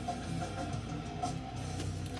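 Music from a live metal concert video playing on a television in the room, low and steady under the pause in talk.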